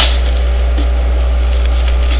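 Steady, loud low electrical hum in the webcam audio, with one sharp click right at the start as a hand moves close to the camera, then faint handling rustles.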